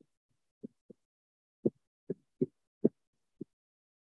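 A few short, soft knocks at irregular intervals, about eight over three seconds, with the last few louder, heard over a video-call line.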